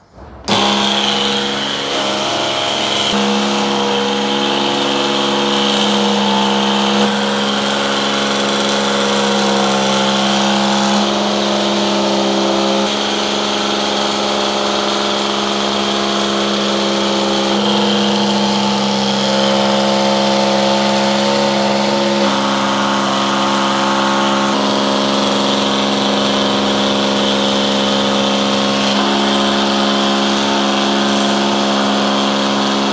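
Small electric pump switched on about half a second in, then running steadily with a hum over a hiss as it circulates hot antifreeze through a leaking radiator.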